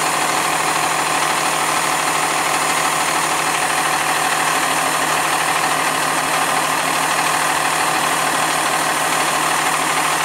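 Fire engine's diesel engine idling steadily close by, an even, unchanging running sound.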